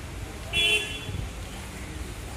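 A single short toot of a vehicle horn about half a second in, over a steady low rumble of outdoor background noise.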